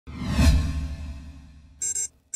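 Logo-reveal whoosh sound effect: a deep swell with a low boom that peaks about half a second in and then fades. A short, bright, high-pitched burst follows near the end.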